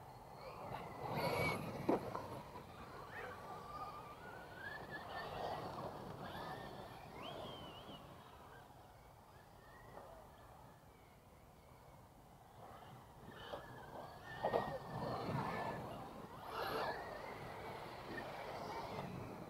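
Faint electric RC trucks running on a dirt track, their motors whining and gliding up and down in pitch with the throttle, over a scrabble of tyres on loose dry dirt. The sound is louder about a second in and again about fourteen to seventeen seconds in, as the trucks pass closer.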